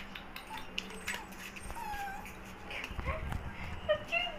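A puppy whining: a few short, high, wavering whines, one about two seconds in and more near the end, over faint clicks and a low steady hum.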